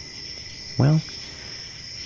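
Crickets chirping steadily as a night-time background ambience.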